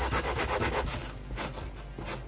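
Finer sandpaper rubbed by hand over expanded polystyrene foam in quick, short back-and-forth strokes, getting quieter about halfway through.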